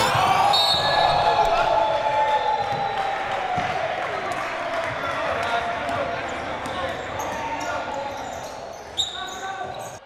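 Live gym sound of a basketball game: voices and a bouncing ball in a large hall, gradually fading out, with a brief sharp sound near the end.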